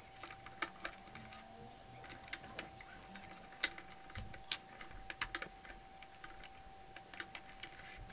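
Faint, irregular small clicks and snaps of rubber bands and a metal hook against the plastic pegs of a Rainbow Loom as the bands are eased off the pegs. A faint steady whine runs underneath.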